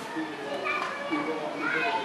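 Children's voices: chatter and calls with no clear words.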